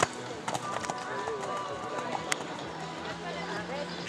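A show-jumping horse's hooves striking the sand arena as it jumps a fence and canters on: a sharp thud right at the start, then a few scattered hoof knocks. People talk in the background throughout.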